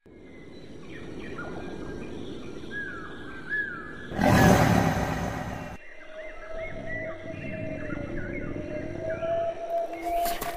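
Layered soundtrack ambience: short sliding chirp-like calls over a low rumbling haze, a loud noisy burst about four seconds in lasting under two seconds, then a steady held tone with more chirps above it.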